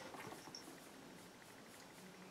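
Faint, scattered rustles of fingers working through and lifting the strands of a synthetic-fibre wig.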